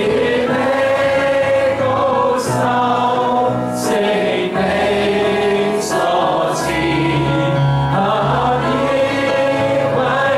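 A man singing a Chinese Christian worship song into a microphone along with played-back music and choir voices, in long held notes.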